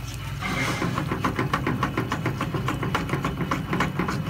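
Wire whisk beating eggs into a wet tomato sauce in an aluminium frying pan, its wires clicking rapidly against the pan at about six strokes a second, starting about half a second in, over a steady low hum.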